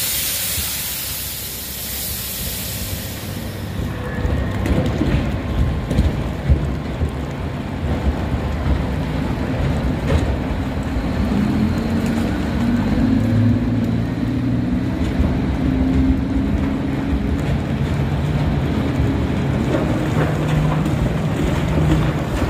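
Kobelco gyratory cone crusher running on hard iron ore: a steady heavy rumble with irregular knocks, and a low hum coming in about halfway through. A water spray hisses over the feed for the first few seconds, then stops.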